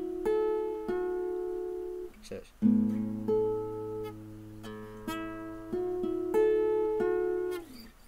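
Acoustic guitar picking a slow riff of single notes fretted high on the neck over open strings, each note ringing on into the next. The riff is played twice, with a short break about two seconds in.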